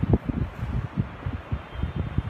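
Air buffeting a close microphone in low, irregular thumps, several a second, over a faint steady hiss.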